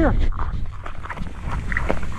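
Irregular footsteps on rubber playground mulch, with a low rumble of wind and handling on the body-worn camera's microphone.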